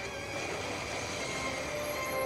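Anime battle-scene soundtrack playing back: music under dense effects sounds, steady in level.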